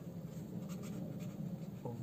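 Felt-tip pen writing on paper over a clipboard: a run of short, light scratchy strokes as block letters are written.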